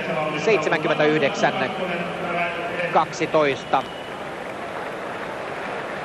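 A man's voice talking over the steady background noise of a stadium crowd. The talk stops about four seconds in, leaving only the crowd noise.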